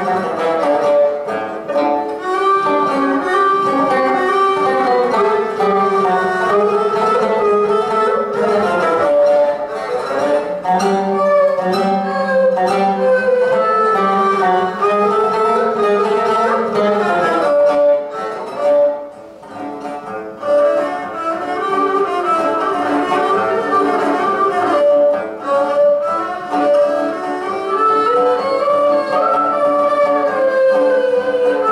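A duo of a klasik kemençe, bowed and carrying the melody, and a plucked lute playing a Turkish zeybek tune. The music softens briefly about two-thirds of the way through.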